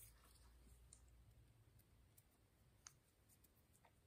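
Near silence: faint room tone with a handful of soft, scattered clicks, the clearest a little under three seconds in.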